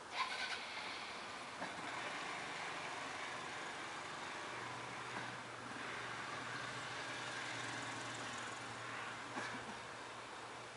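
Faint outdoor background with a small knock at the start, then a steady low engine hum that sets in about halfway through.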